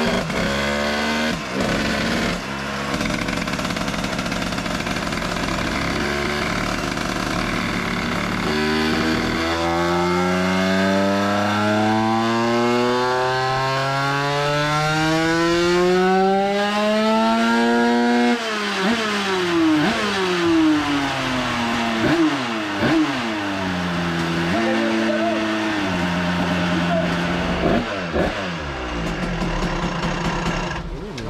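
100cc 2Fast-kitted Minarelli AM6 two-stroke single running on a roller dyno: it holds steady revs, then from about nine seconds in is held wide open with the revs climbing steadily for about nine seconds, before the throttle is shut and the revs fall away with a few short blips. A dyno pull testing a change of ignition advance.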